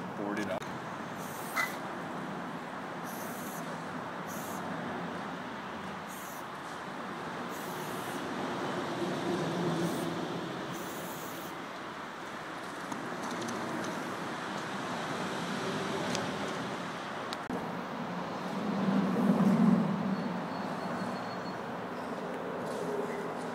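Aerosol spray-paint can hissing in about six short bursts over the first dozen seconds, over a steady hum of traffic.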